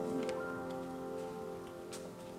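The last held chord at the end of a choir hymn slowly dying away in the church, with a few faint clicks as the singers move and sit down.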